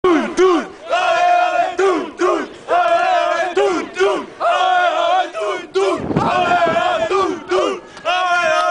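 A group of voices chanting in unison. A short call is followed by a long held shout, and the pattern repeats four times at an even pace.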